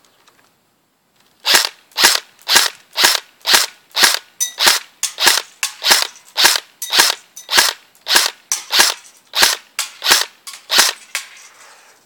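Electric AR-style airsoft rifle firing single shots: about twenty sharp snaps at roughly two a second, starting a moment in and stopping shortly before the end.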